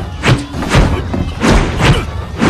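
Dubbed fight sound effects: about four sharp punch and block impacts in quick succession over background music.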